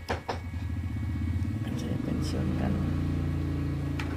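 A low, steady engine hum that shifts slightly in pitch about two seconds in.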